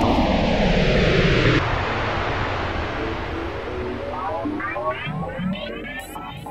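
Spaceship flyby sound effect: a loud rushing rumble that falls in pitch and fades away over several seconds. Synthesizer music fades in underneath about halfway through.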